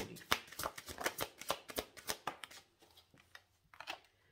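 A deck of tarot cards being shuffled by hand: a quick run of crisp card clicks that thins out after nearly three seconds, with one last click near the end.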